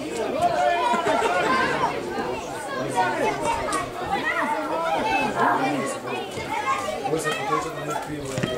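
Several people's voices talking and calling out over one another, a steady mixed chatter of people at a football match.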